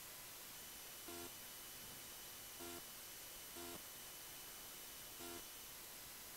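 Faint room hiss with short, low beep-like tones, each about a fifth of a second long and the same pitch every time, repeating at uneven gaps of one to two seconds.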